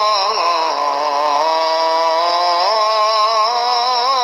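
A man's voice chanting in long, drawn-out held notes, the pitch wavering and sliding in ornamented turns without a break.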